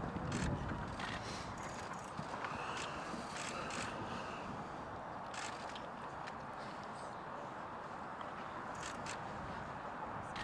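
Steady outdoor background noise, with scattered short, sharp taps and knocks.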